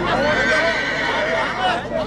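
A horse whinnies, a high, fairly steady call lasting about a second, over men talking close by.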